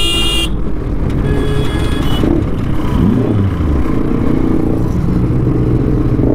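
Motorcycle engines running in town traffic, their note rising and falling about three seconds in. A vehicle horn sounds at the start and cuts off about half a second in, and a second, fainter horn follows about a second and a half in.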